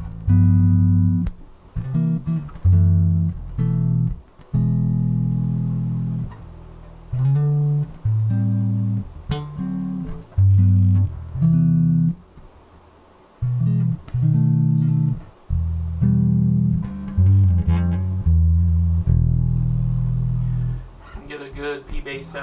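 Zon VB4 headless electric bass with a composite neck, fingerstyle through its neck pickup: a line of single plucked notes, most held for a second or two, with short breaks between them.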